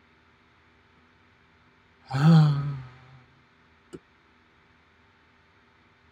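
A man's voiced, exasperated sigh about two seconds in, lasting about a second and falling slightly in pitch, as a web page fails to load. A single sharp click follows about two seconds later.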